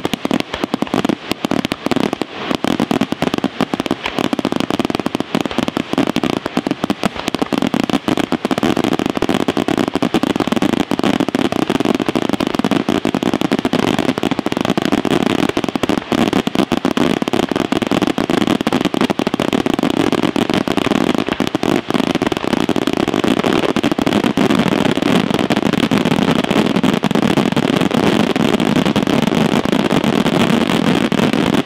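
Aerial fireworks display: a dense barrage of shells bursting and crackling, the reports coming so fast from about eight seconds in that they merge into one continuous loud noise.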